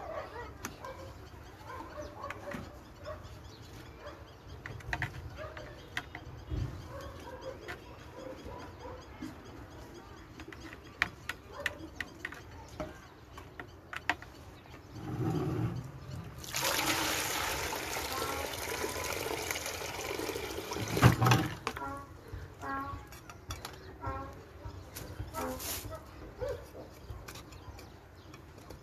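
A small metal trowel scraping and tapping in wet, waterlogged soil in a plastic bucket, a run of small clicks and knocks. About halfway through, a loud, steady rushing hiss of unclear source lasts about five seconds and then stops.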